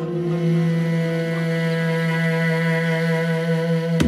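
Electronic house music in a breakdown: one steady held synth drone with overtones and no drums. The drum-machine beat comes back in right at the end.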